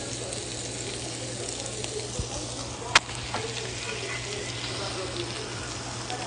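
Chicken pieces frying in a skillet, a steady sizzle, with one sharp click about three seconds in.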